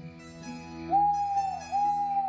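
Soft background music, then about a second in two long owl hoots, each holding one pitch and dropping off at the end.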